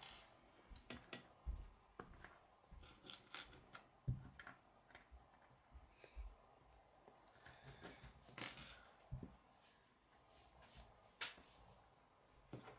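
Near silence broken by faint, scattered clicks and taps of plastic K'nex pieces being handled, fitted together and set down on a wooden tabletop.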